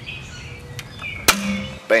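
Hand pop-rivet gun setting a rivet in a yard vac's recoil starter, with one sharp snap about a second and a quarter in as the rivet's mandrel breaks off: the rivet is set.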